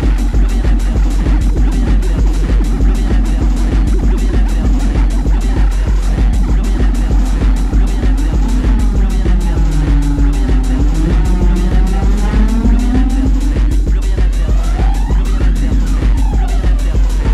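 Loud, fast electronic dance music from a live tekno set, a steady pounding kick drum several beats a second over deep bass. In the second half, siren-like sweeping tones rise and fall over the beat.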